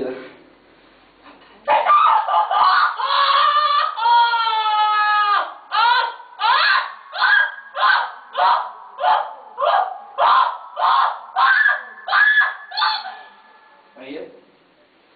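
A woman screaming: a long, wavering high cry, then a run of about a dozen short, high cries at roughly two a second, stopping shortly before the end.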